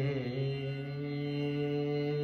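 A male voice sings a long wordless note in an Indian classical style. The pitch dips slightly at the start, then holds steady.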